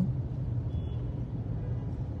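Steady low hum and rumble of a car running, heard from inside the cabin.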